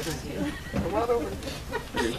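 People talking, with a voice rising and falling in pitch about a second in; the words are not made out.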